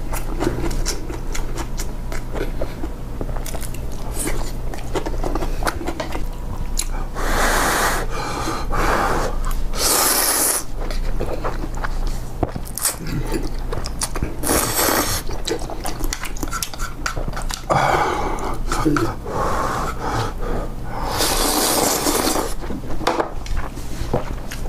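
A person slurping spicy instant ramen noodles in about five drawn-in slurps of about a second each, with chewing and small wet clicks between them.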